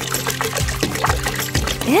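Milk pouring and trickling into a glass blender jar over background music with a steady beat.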